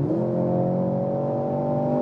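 Mercedes-AMG C43's turbocharged four-cylinder engine pulling under hard acceleration, heard inside the cabin. Just after the start an upshift drops the note, then it climbs slowly and steadily as the car gains speed.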